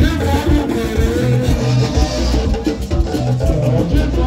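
Loud Owerri highlife band music (egwu Owerri): a plucked guitar line over a steady, rhythmic bass.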